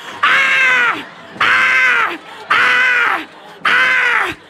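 A woman's voice imitating a dinosaur's call into a microphone: four long cries in a row, each under a second and about a second apart, each rising at the start and falling away at the end.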